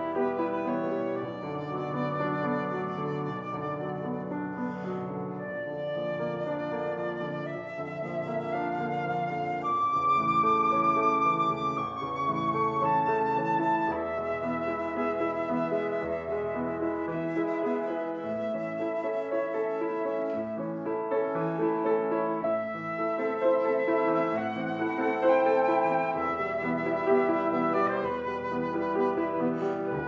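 Concert flute and grand piano playing together: the flute carries a slow melody of long held notes with few breaks for breath, over a steady piano accompaniment.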